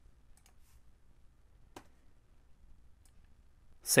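A few faint, scattered clicks of a computer mouse and keyboard, with the strongest about two seconds in. A voice starts just at the end.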